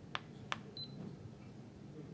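Two sharp clicks from the keypad of a Leica Disto X310 laser distance meter, followed a moment later by a short high beep as the meter takes its measurement.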